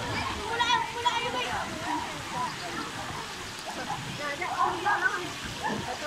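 Scattered voices and shouts of children playing in a water-park pool, over a steady wash of running and splashing water.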